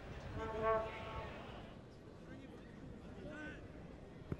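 Football stadium ambience with a long, drawn-out shout from the ground, loudest a little under a second in, and a shorter call near the end.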